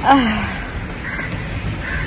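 A woman's short wordless vocal sound, like a soft laughing 'aah', falling in pitch about a tenth of a second in, then steady outdoor background hiss.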